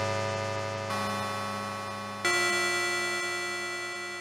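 Korg Mono/Poly software synthesizer playing its 'Bellz' bell/decay preset: three struck bell-like notes, each fading slowly, with the second about a second in and the third just past two seconds.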